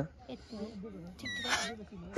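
A leaf held to the lips and blown as a whistle gives one short, high squeak about a second and a half in, over faint murmured talk.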